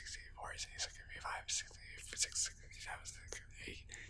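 Whispered speech only: a man whispering numbers in a steady count, with crisp hissing consonants.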